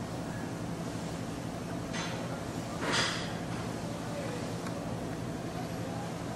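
Steady low mechanical hum, with two short hissing rushes about two and three seconds in, the second louder.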